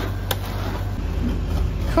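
Steady low machine hum, typical of a rolled-ice-cream cold plate's refrigeration unit running, with a single sharp click about a third of a second in.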